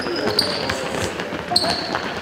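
Handball practice game on an indoor court: a handball bouncing on the hall floor, with sports shoes squeaking twice and players' voices.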